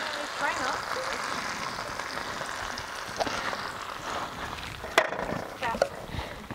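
Sliced steak and Brussels sprouts sizzling steadily on a propane-fired Skottle griddle, with one sharp click about five seconds in.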